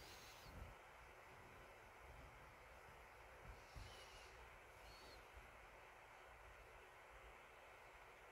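Near silence: steady faint hiss of room tone, with a couple of faint soft bumps.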